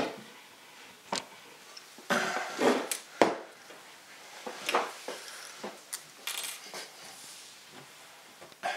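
Small metal parts being handled on a workbench: a stepper motor's steel rotor and a compass picked up and moved about, making scattered clinks and knocks about a second apart, with one sharp click about three seconds in.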